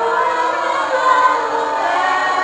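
Catholic community choir of men and women singing together, holding sustained notes.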